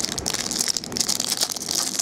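Clear plastic wrapper of a trading-card pack crinkling and crackling as it is pulled off by hand, a dense run of sharp crackles.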